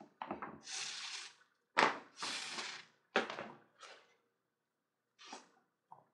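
Rawhide lace being pulled, slid and worked through a wrap on a wooden axe handle: a run of short rustling, scraping strokes, several close together in the first four seconds and two fainter ones near the end.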